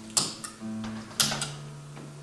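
Guitar strings plucked twice, about a second apart, the notes ringing on between the plucks.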